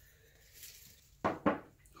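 Mostly quiet room tone, then two short vocal sounds from a man, a quarter-second apart, near the end.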